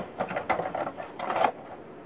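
Clear plastic insert and cardboard of a Funko Pop box being handled as the figure is taken out, an uneven run of crinkling with a few sharper crackles.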